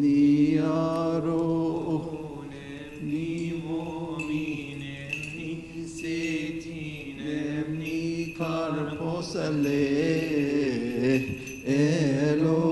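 A man chanting a slow, drawn-out Coptic liturgical melody, with long held notes that slide up and down in pitch and short pauses between phrases.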